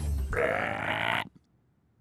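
A cartoon toad's croak, a rough grunting sound that cuts off just over a second in.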